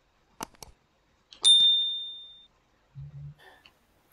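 A single high ding that rings and fades out over about a second, preceded by two faint clicks; a short low hum follows near the end.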